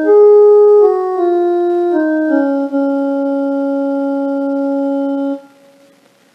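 Electronic keyboard playing a stepwise descending phrase in Raga Yaman (Pa Ma Ga Re Sa), with each note held at an even level. It comes to rest on a long held tonic Sa that cuts off about five seconds in.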